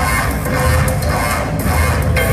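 Loud live band music played through a club PA, steady throughout, with a heavy, booming bass.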